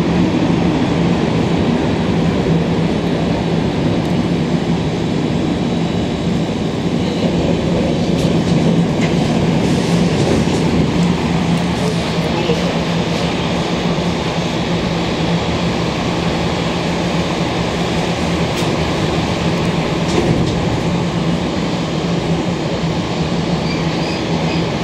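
Inside a Montreal Metro MR-63 rubber-tyred train as it pulls past the platform and runs through the tunnel: a loud, steady running noise with a low hum and a few faint clicks.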